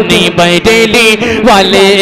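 A man chanting a devotional slogan in a sung, melodic voice into a microphone, with long held, wavering notes.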